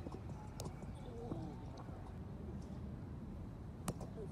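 Roundnet rally: sharp slaps of the ball being struck by hands and bouncing off the net. There is a faint hit about half a second in and a loud one near the end, over a low outdoor rumble.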